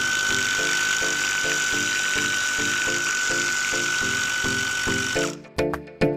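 Gloria MultiJet 18V battery medium-pressure sprayer running, its pump giving a steady high whine over the hiss of the water jet hitting the pool surface. It cuts off suddenly about five seconds in, and music starts near the end.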